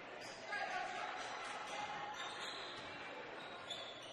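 Faint basketball-gym ambience during play: a low, steady hum of crowd and court noise.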